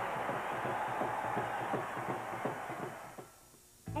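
Basketball arena crowd noise with sneakers squeaking on the hardwood court, fading out about three seconds in.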